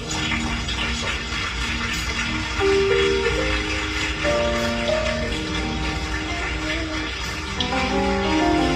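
Slow church music of long held notes, over a steady haze of congregation noise.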